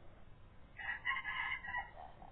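A rooster crowing once, about a second long, starting near the middle.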